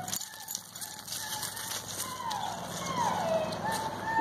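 A distant voice calling a dog in a high, sing-song tone, faint and broken into short notes with two drawn-out falling calls near the middle. Light crackling and rustle runs under it.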